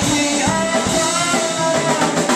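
Small live rock band playing: electric guitar and drum kit, with a singer's voice holding a note.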